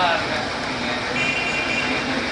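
Outdoor background noise with faint, indistinct voices in it; a thin steady high tone joins about a second in.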